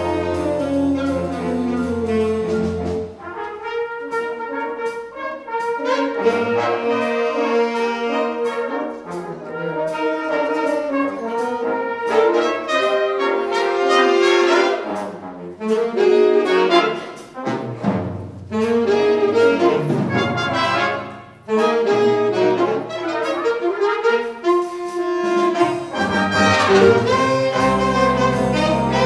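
High school jazz band playing an upbeat swing tune: saxophones, trumpets and trombones with bass guitar and drums. The low bass line drops out about three seconds in and comes back near the end.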